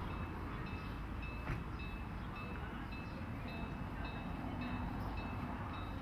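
A narrow-gauge steam locomotive's warning bell ringing in a steady rhythm, about two strokes a second, over a low rumble, as the train comes through the town street.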